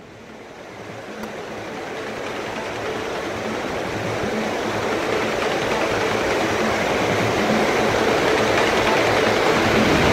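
Steady rushing noise of wind and sea, fading in over the first few seconds and then holding level, with a faint low hum underneath.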